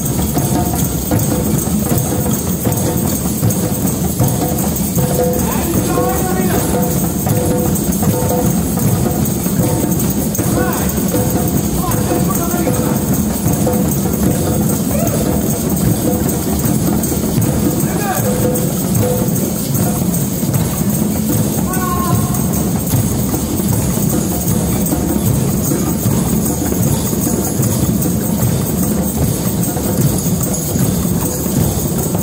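A drum circle of many hand drums, djembes among them, played together in a continuous, dense group rhythm with no breaks.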